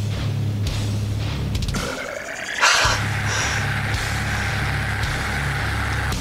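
Heavy metal music in a slow, heavy breakdown: low, pulsing guitars and bass with drums, rising to a louder, harsher surge about two and a half seconds in.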